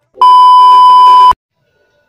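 Loud TV test-tone beep, a steady high pitch with a little static over it, used as a colour-bars transition effect; it lasts about a second and cuts off suddenly.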